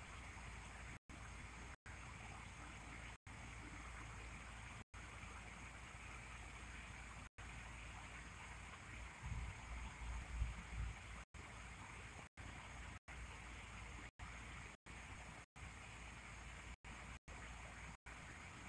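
Faint, steady background hiss broken by many very short dropouts where the sound cuts out completely. There is a brief low rumble about halfway through.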